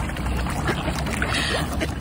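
Water splashing and churning as a crowd of mute swans and mallard ducks paddle and jostle close by, with a brief louder splash about a second and a half in.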